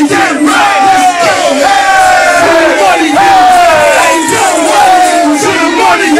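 Several men shouting and yelling loudly over one another at a live hip-hop show, partly through a microphone, with a string of shouts that fall in pitch one after another.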